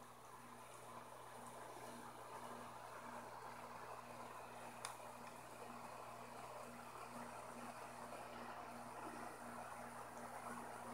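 Faint steady bubbling and hum of aquarium aeration, with one small click about five seconds in.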